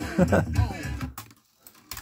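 Cassette playback of a rap track through an Alpine 7517 car stereo tape deck breaks off about a second in as the deck's rewind button is worked. After a short silence a sharp click from the deck's controls comes near the end.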